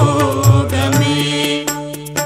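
Tamil devotional music to Lord Venkateswara: a melodic line that bends and wavers in pitch, then settles into held notes, over a low drum beat about twice a second.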